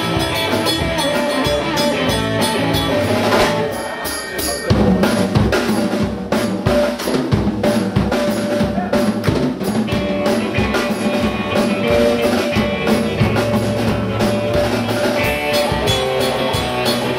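Live rock band playing electric guitars over a drum kit, the drums hitting steadily. Around four seconds in the sound drops briefly, then the full band comes back in louder.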